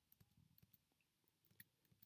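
Faint, scattered clicks of a computer keyboard's space bar being pressed several times, each press stepping the program by one instruction.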